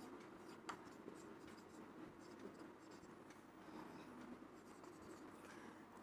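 Faint marker-pen strokes on a whiteboard as a line of handwriting is written: light scratchy rubbing and small ticks of the tip, one slightly sharper tap about a second in.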